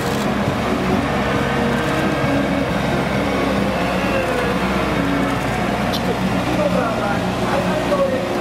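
Diesel engines of heavy vehicles, a wheel loader and large trucks, running as they drive slowly past one after another, with a voice talking over them.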